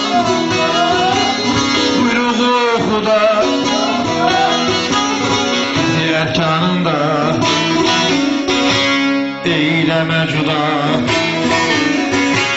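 Alevi semah music: a bağlama (saz) plucked and strummed while a voice sings a deyiş. The singing is clearest in the first few seconds, then the saz strumming carries on.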